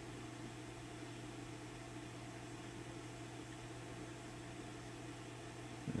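Steady low mains hum under a soft hiss, from a Fender Hot Rod Deluxe tube amp idling while its 6L6 power tubes are being biased.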